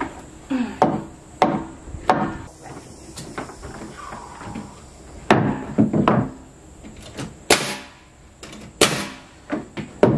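Pneumatic nailer driving framing nails into wooden deck boards: a string of about ten sharp bangs at irregular spacing, a few closely paired.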